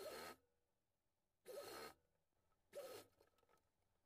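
Near silence, with three faint, brief rustles of a cotton fabric strip being folded and handled by hand.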